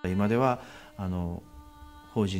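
A woman chanting a Buddhist sutra from a book in long, wavering notes: two drawn-out phrases with a short pause between them.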